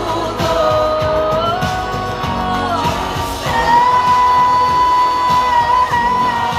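Female vocalist singing live into a handheld microphone over instrumental accompaniment with a steady beat. She sings held notes that step between pitches, then belts one long high note from about halfway on.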